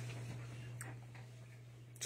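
A steady low electrical hum with two faint clicks, about 0.4 s apart, just under a second in.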